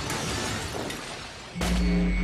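A shot-struck target shattering, the crash of breaking pieces fading away over about a second and a half; then dramatic music comes in suddenly and loudly with a deep sustained note.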